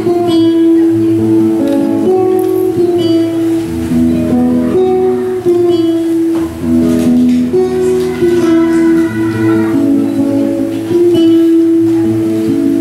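Classical guitar playing the instrumental introduction of a Cuyo tonada: strummed and plucked chords ringing on, changing every second or two.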